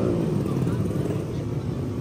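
Motorcycle engine running as a steady low drone, with a higher engine tone fading away in the first half second.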